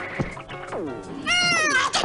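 Cartoon character's gibberish voice: a few whining, cat-like cries that slide down in pitch, the loudest one near the end.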